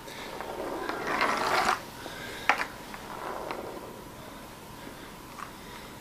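Homemade rubber-band spool tractor unwinding on a slick wooden tabletop, its skewer and spool making a whirring rattle for the first two seconds or so, then a few separate clicks as it runs down. The table is too slick for it to grip, so it spins rather than drives forward.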